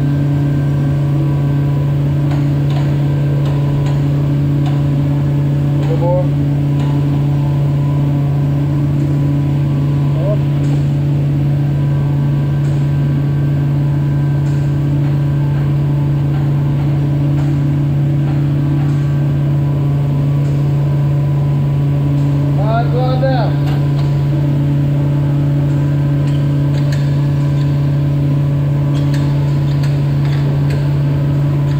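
A steady, loud, low mechanical hum with a fainter drone above it, unchanging throughout, like machinery or an engine running without let-up.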